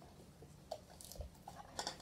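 A few faint, soft mouth and handling sounds, chewing and sipping water, against a quiet room.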